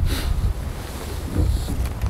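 Wind buffeting an open microphone as an uneven low rumble, with a short hiss near the start and a couple of faint knocks near the end.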